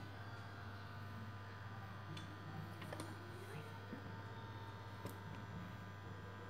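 Quiet kitchen room tone: a steady low hum with a few faint small clicks.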